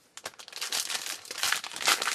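Wrapper of a 2012 Topps Tribute baseball card pack crinkling and tearing as it is pulled open by hand. The crackle grows louder toward the end.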